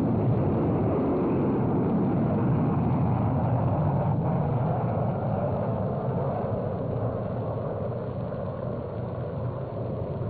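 Solid-fuel rocket motor of a Minuteman ICBM at lift-off from an underground silo: a steady deep rumble that slowly fades over the second half.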